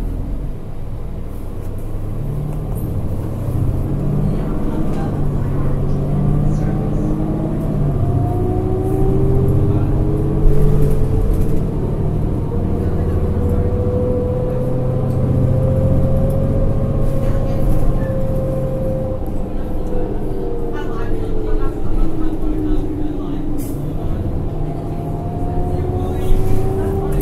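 Interior sound of a 2010 New Flyer D40LF transit bus under way, heard at floor level in the cabin. Its Cummins ISL9 diesel drones low and steps up and down. A whine rises in pitch as the bus gains speed, holds through the middle, and falls away as it slows later on.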